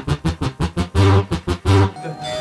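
Electronic dance music from a synthesizer played live from a DJ controller: rapid chopped chords, about six a second, over deep bass hits, giving way to two longer held notes in the second half.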